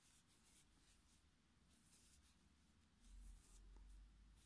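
Near silence, with faint scratchy rubbing of a metal crochet hook drawing yarn through stitches. A faint low rumble comes in near the end.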